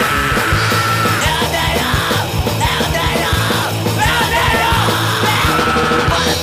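Hardcore punk song played by a full band, with shouted vocals over it.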